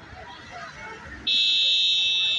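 A vehicle horn sounds one long, steady, buzzing blast, starting just over a second in and much louder than the street and crowd noise beneath it.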